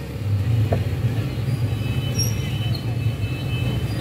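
Steady low rumble of an idling vehicle engine, with a light click about three-quarters of a second in.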